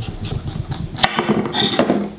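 Chef knife sawing through the hard base of a raw butternut squash on a wooden cutting board, with a sharp knock about a second in.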